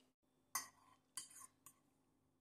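Metal fork clinking against a plate: three quick, sharp clinks spread across two seconds, the second one trailing into a short scrape.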